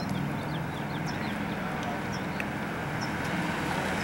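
Steady street traffic noise with a car engine's low hum, and a few faint short high chirps scattered through it.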